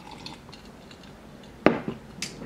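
A drinking glass of coffee set down on a hard surface: one sharp knock near the end, after a quiet stretch.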